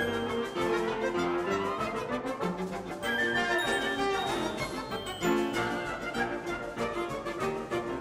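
Orchestral music score for a silent cartoon, with brass and bowed strings playing a tune of quickly changing notes.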